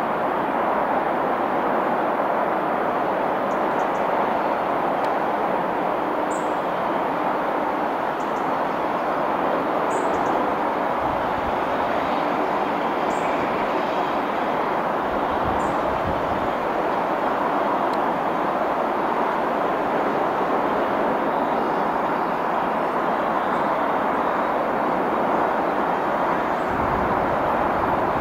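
Two-cylinder BR Standard Class 7 'Britannia' steam locomotive 70000 working hard as it climbs a gradient at a crawl, hauling a train, heard from a distance as a steady exhaust and running sound.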